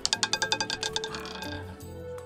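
Roulette ball dropping off the track and clattering across the wheel's pocket dividers: a quick run of clicks that slows and fades out over about a second and a half, over soft background music.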